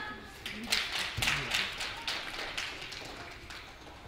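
Applause from a small audience: scattered hand claps that start about half a second in and die away near the end, following the close of a song.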